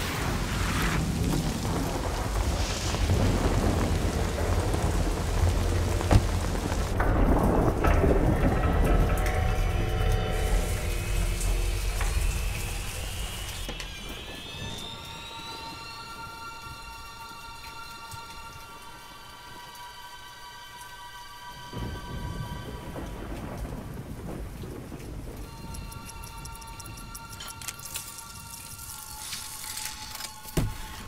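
Film soundtrack of rain with a low thunder rumble, loudest in the first half, while a single musical tone slowly rises in pitch. From about halfway the rumble fades to quieter held high musical tones, and a rain-like hiss comes back near the last third.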